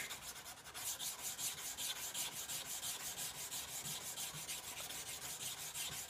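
Hand-sanding a steel knife blade: sandpaper wrapped on a wooden sanding stick rubbed back and forth along the blade in a quick, even rhythm of strokes.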